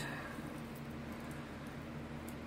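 Plastic clicking and light rustling as the segments of a 3D-printed silk-PLA articulated dragon are worked by hand and its brim is pulled off: one sharper click at the start, then a few faint ticks, over a steady low hum.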